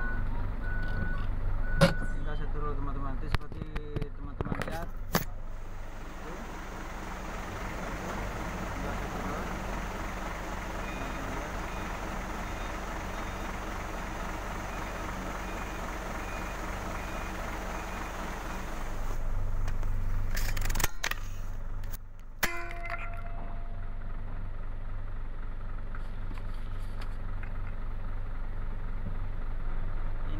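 A truck's diesel engine idling steadily, heard from inside the cab, with scattered clicks and knocks of the cab and cargo loading around it. Faint short beeps repeat through the middle, like a reversing alarm, and a single sharp knock comes about two-thirds of the way in.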